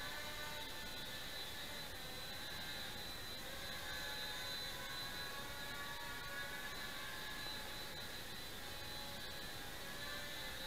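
Blade Nano QX micro quadcopter in flight: a steady high whine from its four small motors and propellers, the pitch wavering slightly as the throttle shifts.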